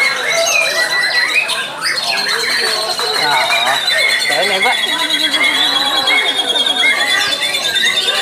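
Many caged songbirds singing at once, among them white-rumped shamas (murai batu), with overlapping warbles, whistles and chirps. A high, rapid trill holds steady underneath.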